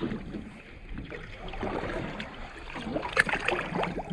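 Seawater splashing and sloshing at a boat's side as a bait on a line is dipped and drawn through the surface, with a cluster of small splashes in the second half.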